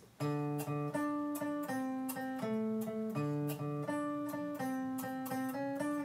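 Electric guitar playing a blues riff in single picked notes, each note struck twice, about two to three notes a second. It is the same riff moved one string down.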